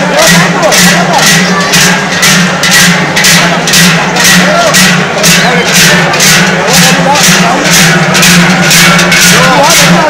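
Joaldunak's pairs of large cowbells (joareak) strapped to the dancers' lower backs clang in unison as they march, in a steady rhythm of about two to three strokes a second, over a crowd talking.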